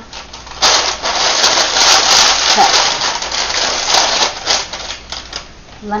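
A sheet of parchment paper being scrunched and crumpled in the hands: a loud, crackling rustle from about half a second in to near the end, then dying down to softer handling.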